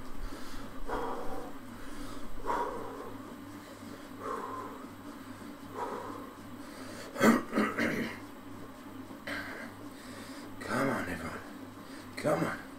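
A man breathing hard as he pedals an exercise bike, one loud breath about every second and a half. About seven seconds in comes a louder, sharper sound, and a steady low hum runs underneath.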